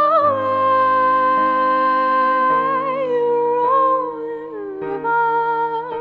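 A classically trained soprano holding long wordless notes with vibrato, sliding down to a lower note near the end. Beneath her is a looped bed of her own layered voice holding sustained chords that shift a few times.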